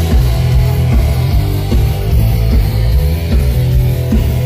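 Live band playing loud, driving rock music with electric guitar over a heavy, steady bass line, heard from within the audience.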